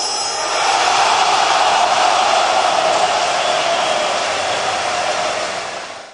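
A dense, steady roar of a large stadium crowd played loud, swelling about a second in and fading near the end.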